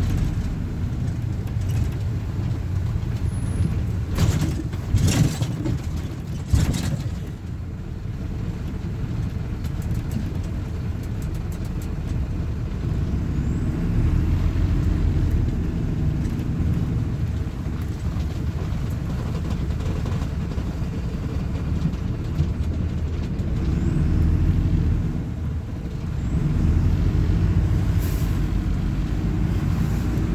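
Inside a Plaxton Beaver 2 midibus under way: the diesel engine's steady low rumble and road noise, with a few sharp knocks or rattles between about four and seven seconds in.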